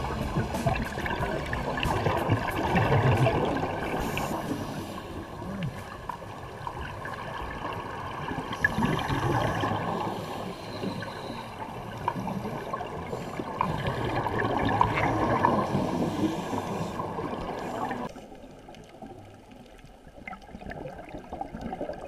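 Underwater scuba audio: divers' exhaled air bubbling and gurgling from their regulators in uneven swells. It gets quieter about eighteen seconds in.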